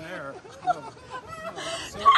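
Several people talking quietly and laughing, with a loud, high-pitched cackling laugh near the end.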